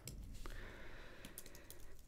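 Computer keyboard typing: a few faint, separate keystrokes as a short name is typed.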